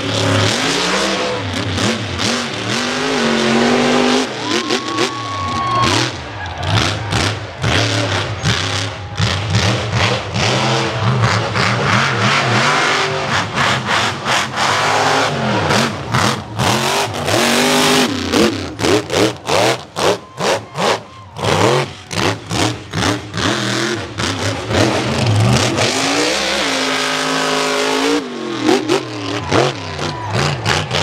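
A supercharged mega truck's engine revving hard and falling back over and over as it runs through mud, with a run of quick throttle stabs about two-thirds of the way through.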